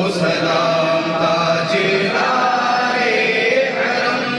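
Several men's voices chanting together in a slow, drawn-out melodic line: devotional chanting by a group, with no instruments standing out.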